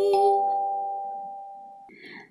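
Kalimba notes ringing out and slowly dying away, with one more tine plucked just after the start; the metal tines sustain steady, bell-like tones that fade gradually.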